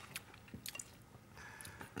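Faint eating sounds: scattered small clicks of a knife and fork on a plate of stir-fried noodles, with quiet chewing.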